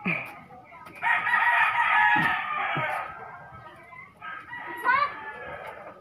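A rooster crowing once, a single long call of about two seconds starting about a second in.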